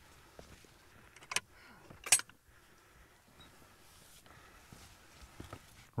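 Footsteps on a stony grass path, with two sharp clacks about a second and a half and two seconds in from a wooden field gate and its latch as walkers go through it.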